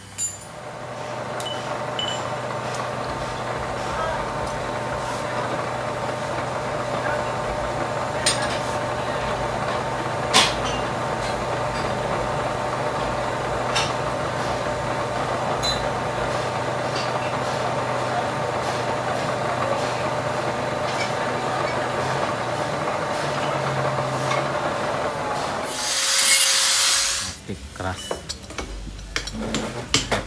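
Metal lathe running steadily, a drill bit fed from the tailstock boring out the worn, wobbly fan belt tensioner pivot of a Peugeot 206 so that a teflon bush can be fitted. Near the end comes a louder, harsh cutting burst of about a second, then a few light knocks.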